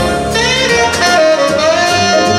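A live jazz-style orchestra with a horn section, strings, piano and drums playing an instrumental passage, the saxophones leading. The lead line holds one long note through the second half over drums and cymbals.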